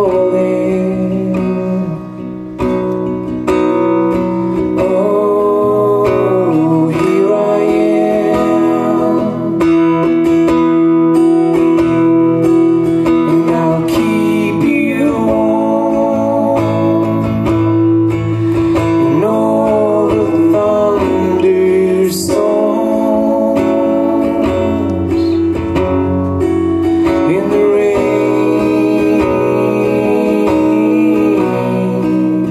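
Acoustic guitar strummed in a steady accompaniment, with singing over it, in a live duo performance of a folk-style song.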